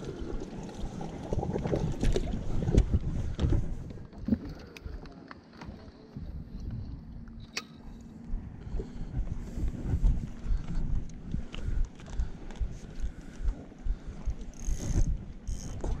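Wind buffeting the microphone with gusty low rumbling, and scattered clicks and knocks of gear being handled on a fishing boat, one sharp click about halfway through.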